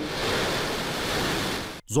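Rocket engines igniting at launch: a steady, dense rushing roar that cuts off suddenly near the end.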